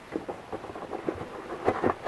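Handling noise of small items being pushed into a moulded foam carrying case: foam rubbing with scattered light knocks and clicks, the sharpest a few together near the end.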